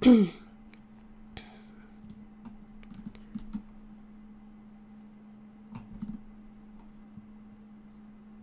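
A person clears their throat once at the start, then a scattering of short computer mouse and keyboard clicks over a steady low hum.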